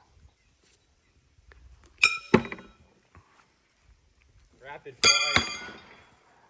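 Thrown horseshoes striking a steel stake: two ringing metallic clangs about two seconds in, then a louder ringing clang about five seconds in.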